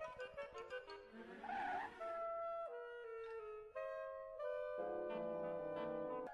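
Orchestral cartoon score on brass and woodwinds: a run of quick short notes, a brief rushing swell about a second and a half in, then longer held notes that step from pitch to pitch.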